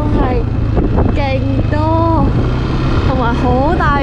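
Steady low rumble of a motor scooter riding along, with wind on the microphone, under a person's voice talking.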